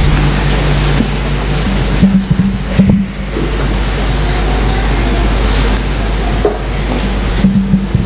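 A congregation sitting down: a dense, steady rustle of chairs and clothing with scattered knocks and scrapes. Soft, sustained low music notes play underneath.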